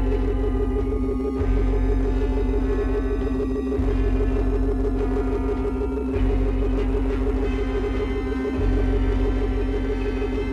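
Eerie science-fiction score: a steady electronic drone with gong-like tones over a deep throb that swells again about every two and a half seconds.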